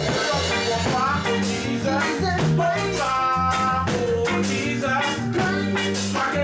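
Reggae band playing together, with a steady drum beat, bass line, keyboard and guitar.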